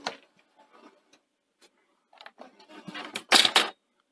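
Sony SL-HF950 Betamax deck's eject mechanism raising the cassette compartment: a click, scattered faint ticks, then mounting mechanical noise and a few loud clatters near the end. The mechanism is not working smoothly, a sign of a fault in the eject mechanism.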